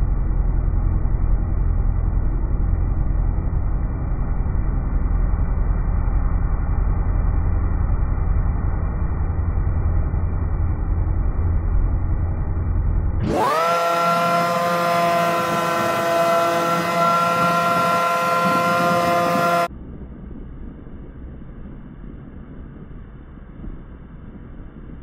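Outboard jet boat motor running hard with a heavy wind rumble on the microphone. About 13 s in, the sound changes abruptly to a clear, steady high-revving engine whine. This cuts off suddenly near 20 s, leaving much quieter running noise.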